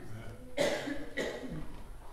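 A person coughing twice in quick succession, the coughs about half a second apart.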